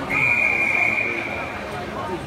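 A referee's whistle blown in one long, steady, high blast lasting about a second and a half, over background chatter.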